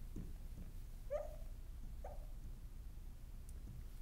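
Marker squeaking on a glass lightboard while drawing: two short squeaks about a second apart, over a faint steady low hum.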